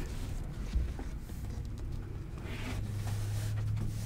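Soft rustling of a tea towel being folded in half and smoothed flat by hand on a cutting mat, with a small click early on. A low steady hum grows stronger in the second half.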